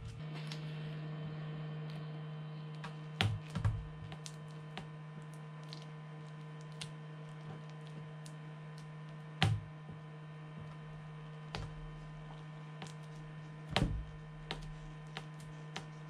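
Scattered light clicks and taps from a plastic uncapping scratcher working the wax cappings off a wooden honey frame, the louder knocks about three, nine and fourteen seconds in, over a steady low hum.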